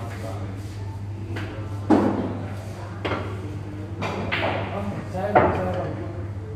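Pool balls knocking together and thudding on the table as they are gathered into the rack: four sharp knocks with short ringing tails, spaced about a second apart, over a steady low hum.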